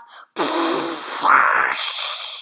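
A child imitating a rocket blasting off with her mouth: a breathy, rushing whoosh that starts a moment in and is loudest about halfway through.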